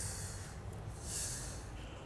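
A person breathing close to a clip-on microphone during a pause in talk: two short breathy hisses, the second about a second in, over faint low background noise.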